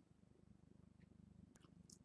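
Near silence: a faint, low, steady hum of room tone.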